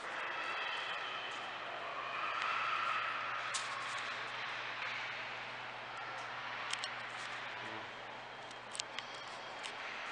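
Steady background noise with a constant low hum, broken by a few faint clicks about three and a half seconds in and again near the end.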